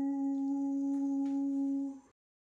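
A man's voice holding the last sung note of a jingle on one steady pitch, then breaking off abruptly at the very end.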